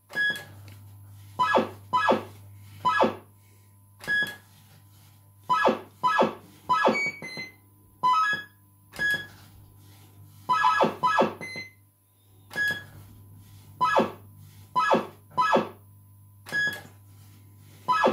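Bell-Fruit Two Step fruit machine playing its electronic sound effects while the reels spin: short synthesised bleeping notes in phrases that repeat every few seconds, with single bleeps between them, over a low steady electrical hum.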